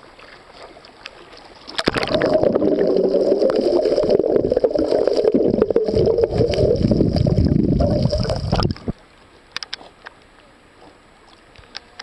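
Muffled, dull rushing and gurgling of seawater around a submerged camera. It starts abruptly about two seconds in, lasts about seven seconds, and cuts off when the camera comes back out of the water. Before and after it there is only faint sound of the sea surface with a few small clicks.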